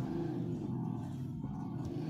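A low, drawn-out hum from a person's voice, held at a steady pitch without words.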